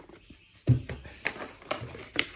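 A knife box being handled and opened: one dull knock about two-thirds of a second in, followed by a few light clicks and taps.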